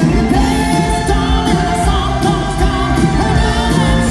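Live rock band playing at full volume: a male lead vocal over electric guitars, keyboards, bass and drums, with a steady drum beat.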